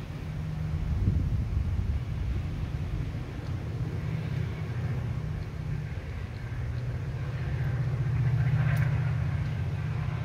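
Low rumble of road traffic on a residential street, swelling about a second in and again near the end.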